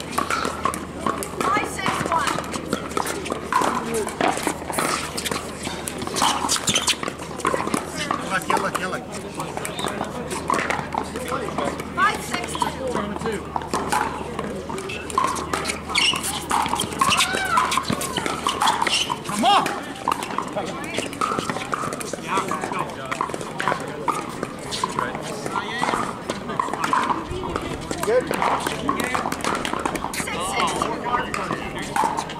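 Pickleball paddles striking the hollow plastic ball in rallies on this and neighbouring courts, a string of sharp pocks, over a murmur of voices.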